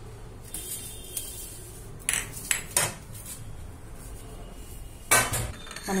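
Crockery plates clinking and knocking as they are handled on a countertop: a few light clinks in the first three seconds, then a louder clatter about five seconds in.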